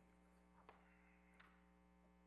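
Near silence: a faint steady electrical hum, with two faint ticks less than a second apart.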